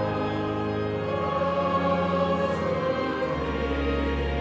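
Choir singing long held chords in the cathedral's reverberant space, with a deep bass note coming in near the end.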